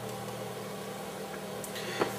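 Steady low electrical hum with a faint hiss: room tone. There is one faint click near the end.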